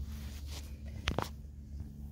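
Soft handling noises as hands work a cabbage seedling's root ball of damp potting mix over the bed, with one brief sharp rustle about a second in, over a low steady rumble.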